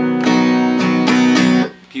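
Acoustic guitar, tuned a whole step down, strummed on a C major chord shape several times in a steady rhythm. The chord rings out and fades shortly before the end.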